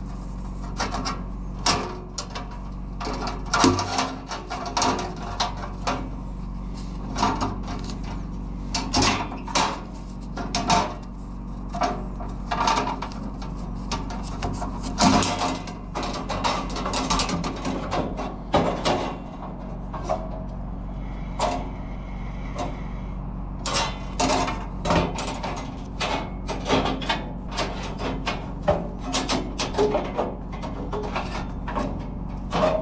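Steel band-saw blade of a Wood-Mizer LT40 sawmill being worked off its wheels by hand after detensioning: irregular scrapes, clicks and rattles of the thin band against the wheels and the steel blade housing, over a steady low hum.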